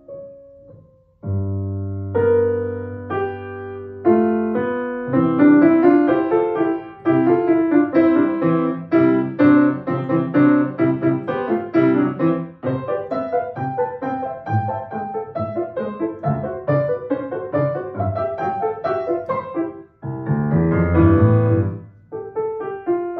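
Solo grand piano playing a classical piece. It starts softly, then a loud low chord sounds about a second in, building into fast, dense runs of notes. Near the end there is a brief break before a loud run low in the bass.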